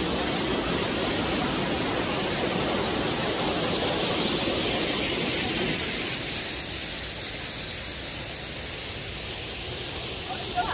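Waterfall rushing, a steady hiss of falling water, which drops in level about six seconds in and stays quieter.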